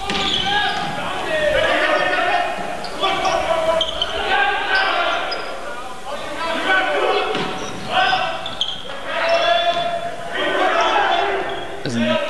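Volleyball rally in a gym: the ball is struck and hits the hardwood floor, with voices over it that are not clear words.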